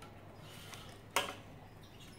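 Quiet handling of wire being threaded through a birdcage's thin metal bars, with one sharp click a little after a second in.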